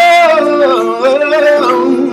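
A man singing a gospel ballad, holding a long note that then bends and wavers through a melismatic run, over steady sustained backing music.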